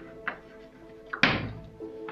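Chalk tapping and scraping on a chalkboard as words are written: a few short strokes, with one louder, sharper stroke a little past the middle.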